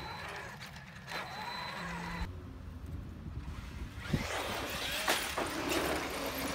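Traxxas X-Maxx 8S brushless electric RC monster truck driving on a dirt track: motor and gear whine rising and falling with the throttle, with two sharp knocks about four and five seconds in.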